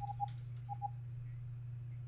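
Four short electronic beeps in two quick pairs about half a second apart, over a steady low electrical hum.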